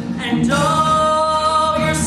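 Glee club singing in live performance: after a brief break, the voices hold a sustained chord from about half a second in.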